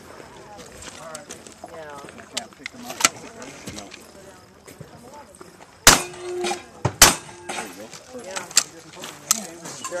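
Break-action double-barrel shotgun fired twice, about a second apart, the two loudest sounds coming past the middle; a sharp click comes earlier, about three seconds in.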